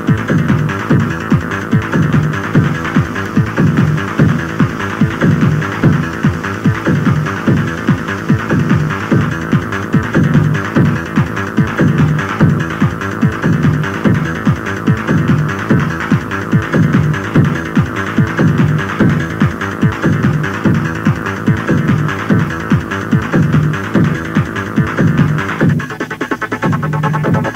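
Electronic dance music from a club DJ set, driven by a steady, pounding kick-drum beat under a dense synth layer, played back from a cassette-tape recording.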